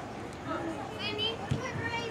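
Young players' high-pitched voices calling out indistinctly across an indoor soccer field, with a single sharp thud of a soccer ball being kicked about one and a half seconds in.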